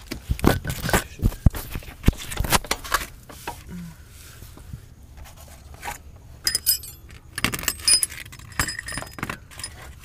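Metal clinks and rattles of sockets and hand tools being handled under a car: a flurry of sharp clicks in the first three seconds and another in the second half, some of them ringing briefly.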